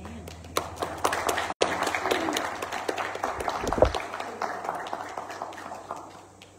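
A congregation applauding, a crowd of hands clapping that starts about half a second in and dies away toward the end, just after the last note of a backing track stops.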